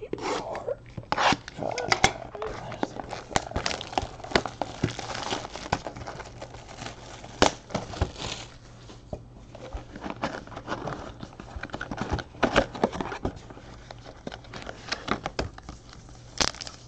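Cardboard trading-card hobby boxes being handled, slid and tapped on a table, with irregular rustling, clicks and crinkling of packaging.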